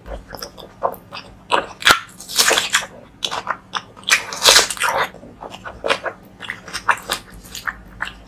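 Close-miked wet chewing and lip smacking of a mouthful of curry and rice eaten by hand, in uneven bursts with many small clicks.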